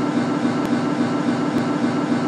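Steady, dense drone from a video/sound installation's soundtrack: a continuous low hum with noise layered over it, machine-like, with two faint clicks.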